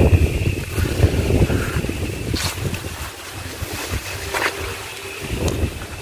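Wind buffeting the microphone: a low rumble, strongest in the first half and easing later, with a faint steady high tone beneath and a couple of brief rustles.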